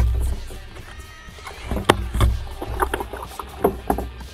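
A hooked bull shark's jaws snapping beside a kayak: a string of sharp snaps, with water splashing against the hull.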